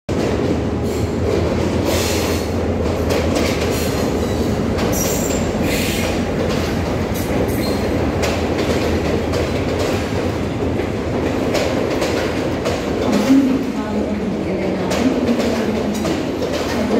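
Passenger train coaches running into a station beside the platform, with a steady rumble and wheels clacking. High-pitched wheel squeals come in the first few seconds as the train slows.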